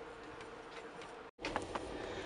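Faint steady hum of a train compartment's background noise. It drops out abruptly at an edit, then returns with a few faint clicks.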